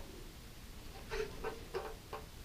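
Quiet room with faint handling noise: a few soft, short rustles and taps in the second half as an aluminium radiator is shifted about by hand.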